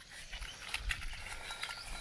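A few short, faint scratches and clicks of a match being struck on a matchbox to light a heap of dry pine needles.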